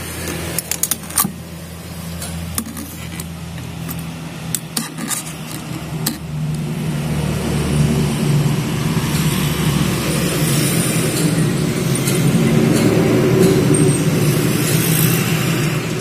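A steady low motor-like hum that grows louder about six seconds in, with a few light metallic clicks in the first seconds as a steel vernier caliper is handled against a pump casing.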